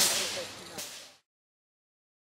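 Steam hissing from the standing MÁV 109.109 steam locomotive, fading away and ending about a second in, with a single sharp click shortly before it stops.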